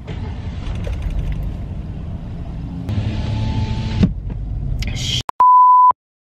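Car engine and road rumble heard inside the cabin, low and steady, for about five seconds. Near the end a loud, steady single-pitched beep of about half a second, an edited-in censor bleep, cuts off sharply into silence.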